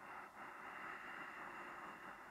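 A faint, slow, steady inhalation lasting about two seconds, starting just after the beginning, as a yoga breath is drawn in.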